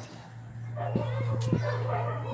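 A dog whining with short sharp yelps, starting about three-quarters of a second in, over a steady low hum.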